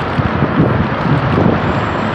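Steady wind rushing over the microphone of a handlebar-mounted camera on a moving bicycle, with road traffic noise from passing cars.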